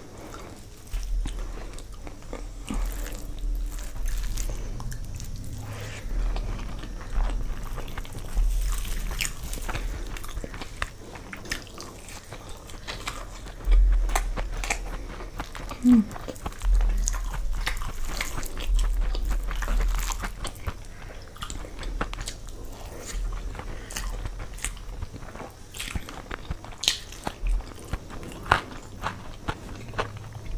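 Close-miked eating: biting into a folded omelette and chewing mouthfuls of khichdi (spiced rice and lentils) eaten by hand, with many small mouth clicks and occasional dull low bumps.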